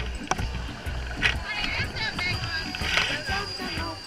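Wind buffeting a small camera's microphone in irregular low gusts, over people's voices and background music.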